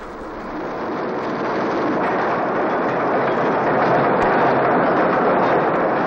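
Steady mechanical noise of coal-face machinery at a longwall with a chain conveyor, growing louder over the first two seconds and then holding even.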